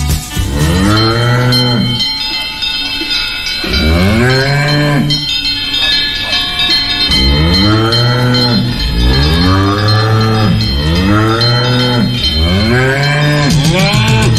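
A string of mooing, cow-like calls, each rising and falling in pitch, repeating about once a second.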